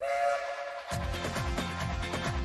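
A steam-locomotive whistle blowing as a cartoon sound effect, a held chord of a few steady tones, joined about a second in by upbeat music with a steady beat.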